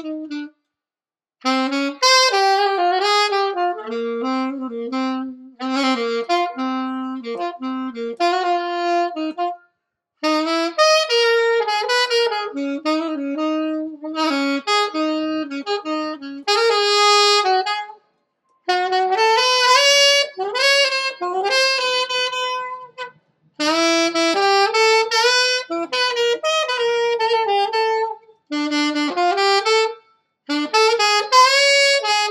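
Solo saxophone playing jazz melody lines from memory in phrases separated by short breath pauses, on a new reed that is being broken in.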